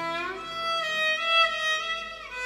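Background music: a violin slides up into a long held note.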